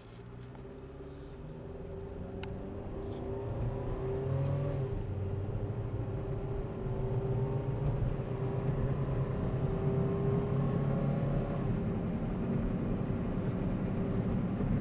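The 2005 Honda Civic's 1.7-litre four-cylinder engine and automatic transmission are heard from inside the cabin as the car pulls away and accelerates. The engine note climbs and the road noise grows louder over the first few seconds, then holds steady. The automatic upshifts smoothly, without hard kicks.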